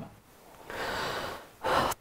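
A man's audible in-breath, a breathy hiss lasting under a second, then a second, shorter intake just before he begins to speak.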